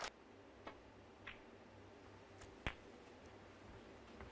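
Near-quiet snooker arena with a few faint clicks of snooker balls, the sharpest about two-thirds of the way through.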